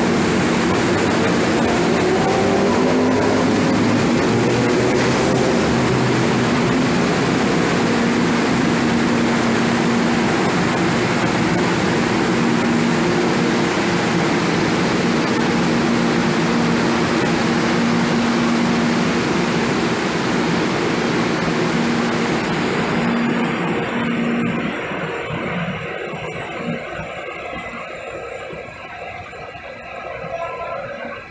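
Light-rail train at a station platform: a loud steady rumble and hiss with an electric motor whine that rises in pitch a few seconds in, then holds as a steady hum. The sound falls away over the last several seconds.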